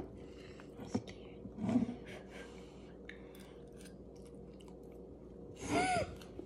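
Metal spoons stirring and scraping in ceramic mugs, with a few light clinks against the mug walls. There is a short soft vocal sound a little under two seconds in, and a brief voice sound near the end.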